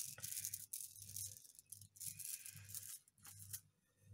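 Beads of a pearl-bead cluster bracelet rattling and clicking against each other as it is handled, in two short spells of rattle with a few sharp ticks near the end, over a faint low hum.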